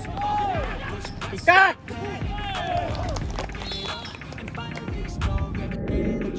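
Footballers shouting short calls to one another across an outdoor pitch, with one much louder shout about a second and a half in, over music playing underneath.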